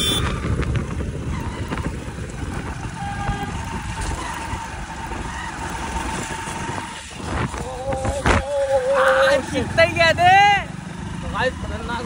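Riding noise on a moving motorcycle: a steady low rush of wind on the microphone with the small engine running underneath. Near the end a voice calls out loudly for a couple of seconds, its pitch rising and falling.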